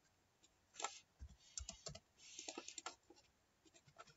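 Faint computer keyboard typing and mouse clicks: a scattered run of short taps, busiest between two and three seconds in.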